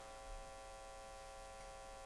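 Faint steady electrical hum: a couple of steady mid-pitched tones over low background noise.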